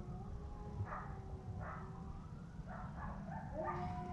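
Neighbouring dogs howling, with several short yips, set off by a siren; faint, with long drawn-out tones that slide slowly in pitch.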